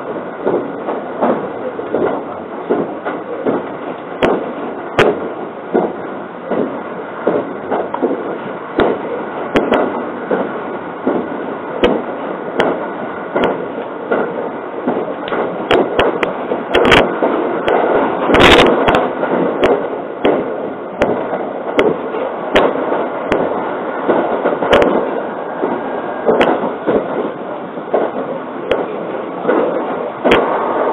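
Running noise heard inside the cabin of a JR 681-series limited express electric train: a steady rumble of wheels on rail with frequent sharp clicks and knocks from the track at irregular spacing. The knocks come louder and thicker a little past the middle.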